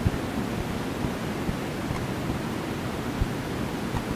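Steady, even hiss of recording background noise, with no voice, in a pause between sung phrases.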